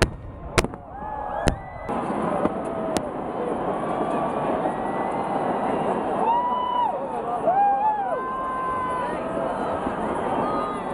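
Fireworks going off: four sharp bangs in the first three seconds, then a large crowd's voices, chatter and shouts.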